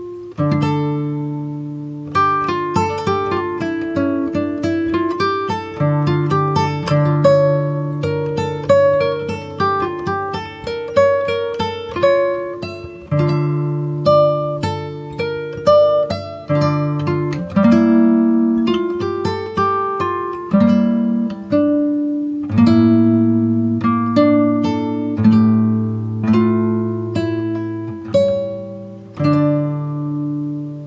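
Instrumental music on a plucked string instrument, most like acoustic guitar: a picked melody over bass notes, each note struck and dying away.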